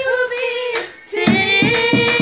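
Singing voices holding a long, slightly wavering melody, breaking off briefly about a second in. When the singing resumes, a steady low beat of about three or four strokes a second joins in.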